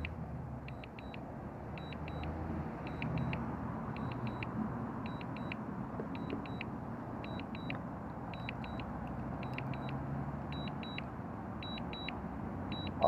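Drone remote controller sounding its low-battery warning: short, high beeps in groups of two or three, about one group a second, as the DJI Mini 3 Pro is automatically returning to home on low battery. Steady road-traffic noise sits underneath.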